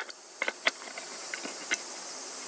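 A steady, high-pitched chorus of insects, with a few short sharp clicks and ticks scattered through it.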